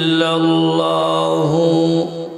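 A man chanting in long held, melodic notes into a microphone, with a short dip in pitch about one and a half seconds in; the voice stops at the very end.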